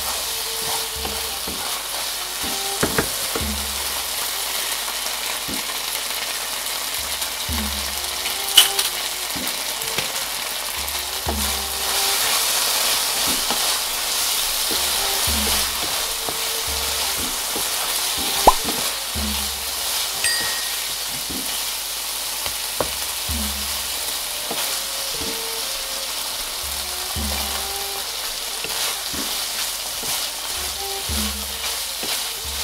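Chicken and red curry paste sizzling steadily in a non-stick frying pan while a wooden spatula stirs and scrapes it, with a few sharp knocks along the way.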